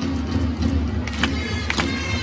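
A Japanese pro-baseball player's cheer song (ōenka) played over the stadium loudspeakers as part of remote cheering, with sharp claps from the crowd in the stands.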